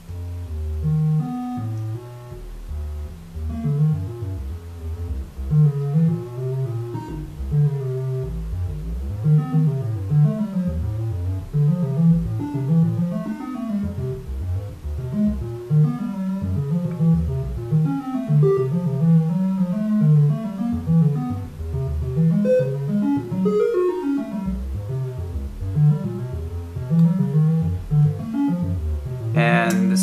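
Modular synthesizer voice pitched by the Żłob Modular Entropy's sample-and-hold random voltages: a stream of short plucked-sounding notes, several a second, jumping to random pitches in wide leaps.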